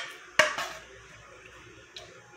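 A single sharp clack of a food storage container being handled, about half a second in, followed by a faint click near the end.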